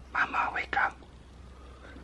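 A person whispering for under a second near the start, over a faint steady room hum.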